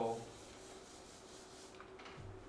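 Faint, steady rubbing of a whiteboard duster wiping marker ink off a whiteboard.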